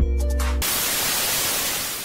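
Background music with a beat cuts off about half a second in and is replaced by a steady hiss of TV static (white noise), an end-screen transition effect.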